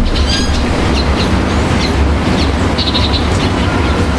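Steady low rumble and hiss of open-air background noise, with several short, high bird chirps scattered through it.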